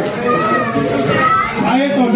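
Several people talking and calling out over one another, with children's voices among them.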